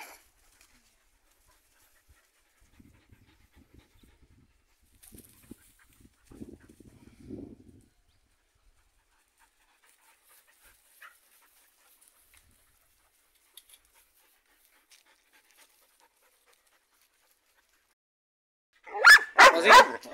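Belgian Malinois puppies at play: faint, scattered dog sounds, panting and short vocal noises, strongest about six to seven and a half seconds in, with long quiet stretches between.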